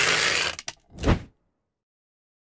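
Logo-reveal sound effect: a noisy whoosh that stops about half a second in, two quick clicks, then a short swelling swoosh about a second in.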